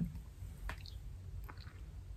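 Faint sips and swallows of water drawn through a water bottle's straw, with a couple of soft clicks over a low hum.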